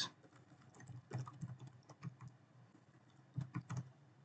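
Computer keyboard typing: faint, irregular keystrokes in short runs, with a few louder strokes near the end.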